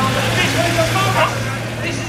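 Engine of a WWII military truck running as it drives slowly past close by, a steady low hum, with voices over it.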